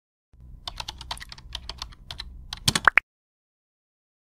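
Keyboard typing sound effect: a quick, uneven run of key clicks, ending in two short rising tones just before it stops about three seconds in.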